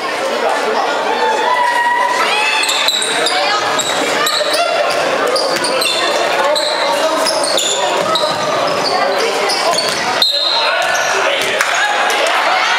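Live basketball game in a large sports hall: voices call and shout in the hall's echo while the ball bounces and shoes squeak in short high chirps on the court. One sharp knock stands out about ten seconds in.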